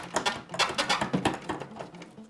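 Quick small clicks and rattles of plastic and metal as an iMac G3's motherboard is worked loose from its housing by hand.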